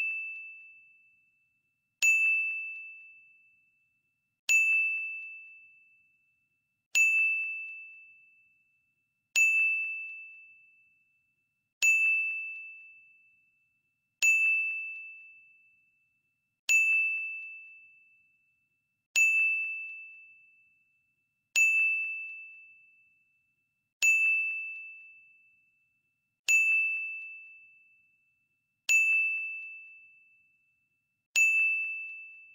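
A single high, bell-like ding sounding about every two and a half seconds, a dozen times, each one ringing out and fading before the next. It is a countdown-timer chime sound effect, one ding per count as the answer time runs down.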